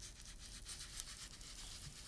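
Foam ink-blending tool loaded with Distress Oxide ink being rubbed in quick, repeated strokes over textured cardstock: a faint, steady scratchy scrubbing.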